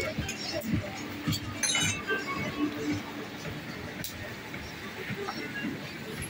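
Busy bar ambience: background music and indistinct voices, with a few sharp clinks of drinkware on the counter, clustered about a second and a half in, and another about four seconds in.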